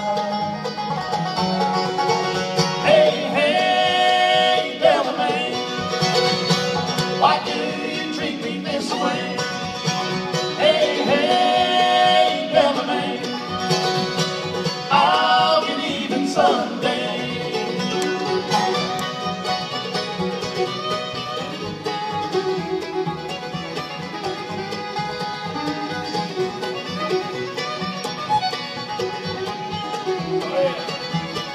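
A bluegrass band playing live: fiddle, banjo, acoustic guitar, mandolin and upright bass together, with no words sung.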